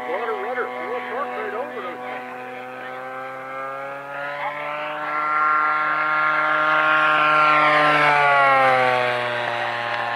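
Radio-controlled model airplane's propeller engine droning through a flypast: it grows louder from about four seconds in, is loudest around seven to eight seconds, and drops in pitch as the plane passes. Voices can be heard in the first two seconds.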